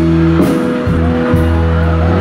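Live band music played loud through stage speakers, led by guitars over held bass notes, with sharp hits about once a second.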